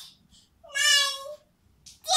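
A toddler's voice: one short, high-pitched call a little over half a second in, lasting under a second.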